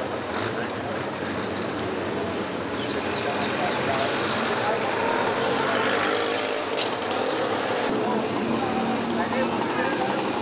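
Busy street ambience: a steady mix of motor traffic and many people talking at once.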